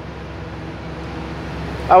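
Ford 6.2 L V8 gasoline engine idling steadily, a low even drone heard from inside the cab.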